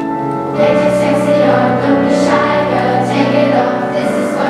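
Children's choir singing with instrumental accompaniment; the voices come in strongly about half a second in.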